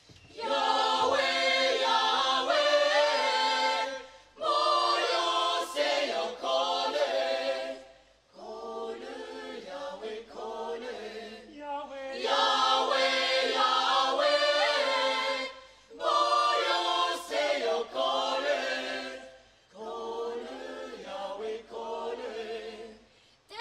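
Mixed choir of men, women and children singing a cappella in phrases of about four seconds, each ending in a short breath pause, two louder phrases followed by a softer one, twice over.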